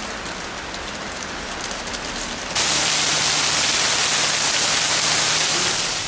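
Rain falling steadily, an even hiss that suddenly becomes louder and denser about two and a half seconds in as the downpour comes in heavier.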